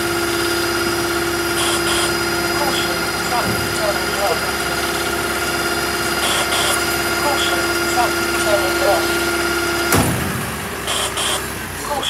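Food-waste collection lorry running close by: a steady engine hum with a constant whine, which cuts off with a click about ten seconds in.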